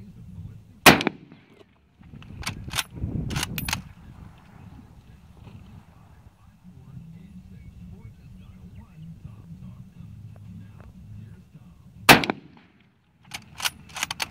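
Mosin Nagant 91/30 bolt-action rifle firing 7.62x54R surplus ammunition: one loud shot about a second in and another about twelve seconds in. Each shot is followed by a quick cluster of metallic clacks as the bolt is worked to eject the case and chamber the next round.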